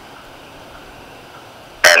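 Steady faint hiss of a recorded telephone line during a pause in the call, then a short, loud burst near the end, as a voice starts up again.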